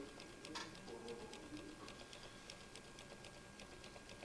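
Near silence in a pause of a talk: faint room tone with many small, irregular clicks and a faint steady high-pitched tone.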